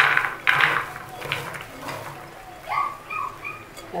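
Diced watermelon rind tipped from a plastic bowl into an aluminium cooking pot: a rush of pieces landing in the pot at the start, then lighter knocks and rustling as the last pieces are pushed in by hand.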